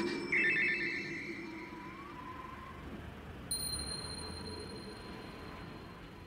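A trilling, bell-like electronic ringing tone starting about half a second in and lasting about a second and a half, followed from about three and a half seconds by a faint steady high tone.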